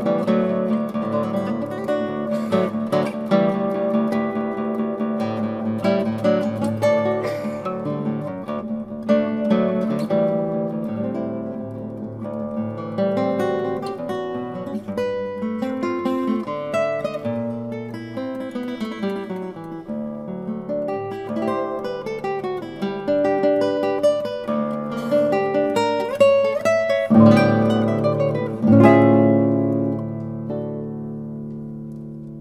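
Solo Arcangel classical guitar played with the fingers: a flowing passage of plucked notes over a bass line, with two loud full chords near the end.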